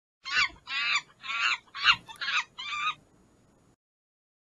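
Six short, shrill animal-like calls in quick succession, each bending up and down in pitch, over about three seconds: an intro sound effect.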